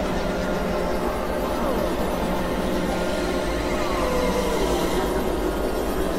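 Dense, steady wash of layered experimental electronic noise and drones, several tracks mixed together, with a few falling pitch glides about two seconds in and again around four to five seconds in.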